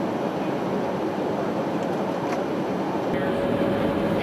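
Steady cabin noise of a Boeing E-3 Sentry AWACS in flight, a loud even rush of engines and airflow. About three seconds in, the sound changes at a cut to a deeper rumble with a faint steady hum.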